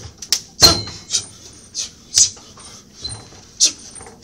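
Sharp, hissing breaths forced out with each karate strike during a kata: short bursts about two a second, with one louder burst about half a second in.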